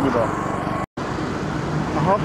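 Road traffic rumble from passing vehicles, steady and low. It breaks off completely for a moment about a second in.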